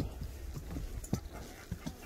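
A horse walking, its hooves knocking on the trail in an uneven beat, a few steps about half a second apart, over a low rumble on the microphone.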